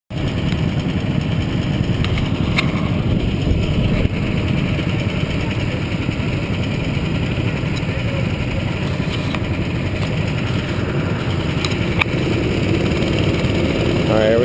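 Go-kart engines running at idle, a steady low drone, with a few sharp knocks.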